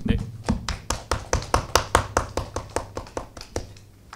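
A small group of people clapping, each clap distinct. The clapping thins out and stops about three and a half seconds in.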